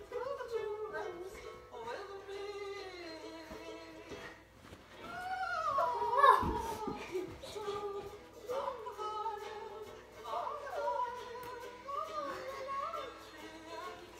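Music with singing: a sung melody that glides and holds notes, swelling loudest about six seconds in.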